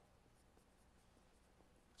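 Near silence, with a faint marker writing on a whiteboard.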